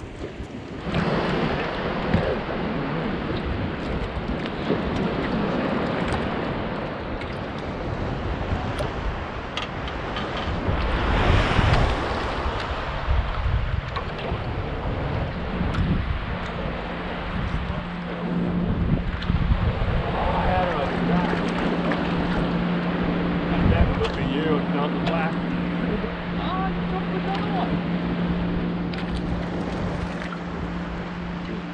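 Wind buffeting the microphone over water slapping against a small aluminium boat. From about halfway through, a steady low electric hum of the bow-mounted trolling motor runs underneath.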